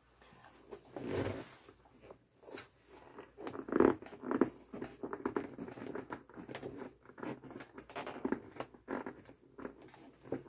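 Close-miked rustling and handling noises: irregular soft scrapes, rustles and small taps, with a few louder rustles about a second in and around the fourth second.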